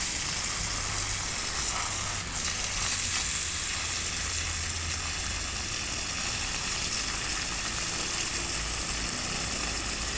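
Steady hiss of water spraying from a pistol-grip garden hose nozzle onto potted trees, over a low steady rumble.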